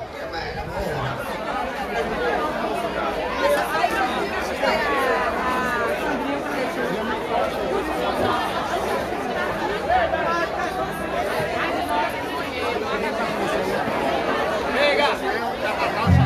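Crowd of many people talking at once, a steady hubbub of overlapping voices with no music playing.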